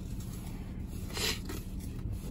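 Vinyl decal sheets rustling briefly as they are handled, once about a second in, over a steady low hum.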